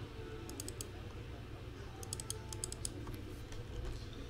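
Typing on a computer keyboard: a quick run of keystrokes about half a second in, then a longer run from about two seconds in, over a low steady hum.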